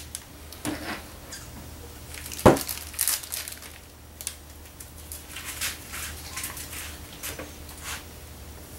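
Handling noises of a plastic paint bottle and a paintbrush: scattered clicks and rustles, with one sharp knock about two and a half seconds in, then a run of light scrapes and rustles as the brush goes to work.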